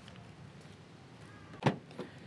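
A car's side door being opened: one sharp latch clunk about three-quarters of the way in, then a smaller click, over a low, steady background.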